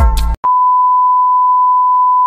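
Music cuts off about a third of a second in, then a television colour-bars test tone starts: one loud, steady, unwavering beep.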